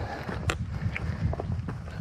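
Footsteps of a hiker walking a forest trail, with a sharp step or click about a quarter of the way in and a few fainter ones after it, over a low rumble of handling or wind on the microphone.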